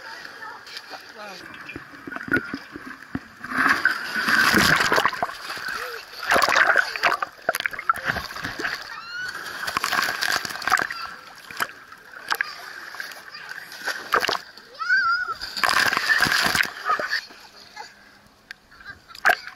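Pool water splashing right at the camera lens as children swim and splash close by, in several loud bursts a few seconds apart.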